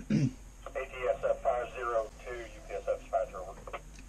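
A man's voice calling in over a two-way radio speaker, sounding thin and narrow as radio speech does, after a short burst at the very start.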